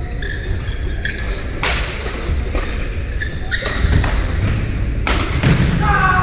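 Badminton rally on an indoor court: sharp racket strikes on the shuttlecock about once a second, short shoe squeaks on the court mat and heavy footfalls. The low thuds grow heavier near the end as a player lunges and dives to the floor.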